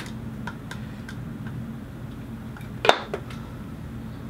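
Light clicks and taps of a makeup brush against a plastic bronzer compact as the powder is picked up, with one sharper tap about three seconds in, over a low steady hum of the room.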